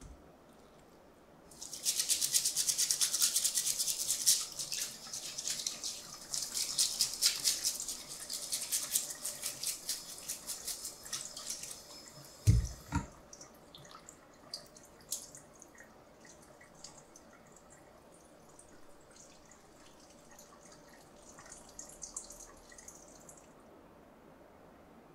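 Running tap water and a fast, scratchy scrubbing as the bloodline of a gutted, butterflied white tilefish is brushed out with a bamboo sasara brush, lasting about ten seconds. It ends with a single low thump, followed by a few faint clicks and a brief faint trickle near the end.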